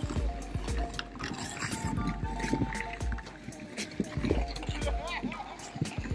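Music playing over the chatter of a crowd of skaters, with skate blades scraping and clicking on the ice.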